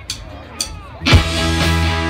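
Two sharp clicks half a second apart, the end of a count-in. About a second in, a live rock band of two electric guitars, bass guitar and drum kit comes in at full volume with a loud hit on the first beat.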